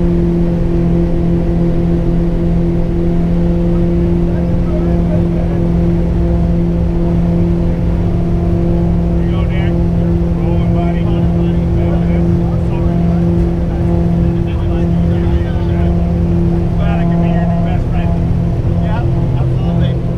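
Twin piston engines and propellers of a skydiving plane running at high power for takeoff, a loud, steady drone heard from inside the cabin.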